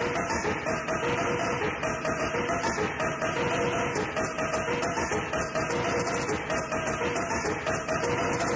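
Rave music from a DJ's mixed set: a fast, dense beat with a short synth note pattern repeating over it.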